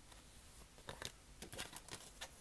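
Faint clicks and rustles of tarot cards being handled, a few small ticks in the second half.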